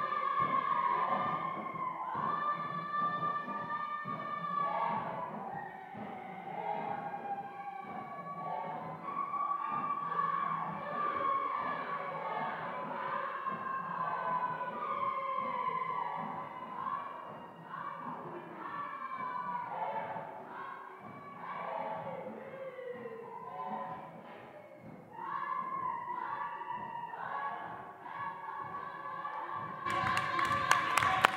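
A group of performers singing an African song together, several voices overlapping in harmony, with scattered thumps among the singing. The singing dips briefly about two thirds of the way through, then picks up again.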